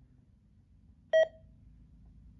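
A single short electronic beep, about a fifth of a second long, from a Uniden BC125AT handheld scanner, over a faint low hum.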